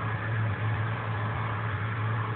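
A Chevrolet vehicle's engine running, heard from inside the cabin as a steady low hum under an even wash of cabin noise.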